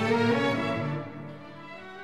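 Slow instrumental music led by violins, growing quieter about a second in.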